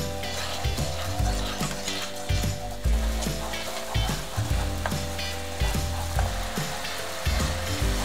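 Chili-oil and soy-sauce seasoning sizzling and bubbling in a frying pan as it comes to a boil, stirred with a spoon, with background music underneath.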